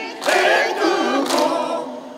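A mixed group of older men and women singing together in unison, one sung phrase after a brief break near the start.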